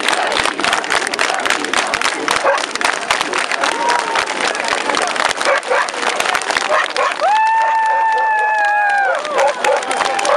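Large outdoor crowd: a dense din of voices with many sharp claps and clicks. About seven seconds in, a high-pitched call rises out of it and is held for about two seconds.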